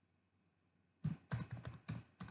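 Computer keyboard being typed: a quiet first second, then a quick run of about half a dozen keystrokes from about a second in.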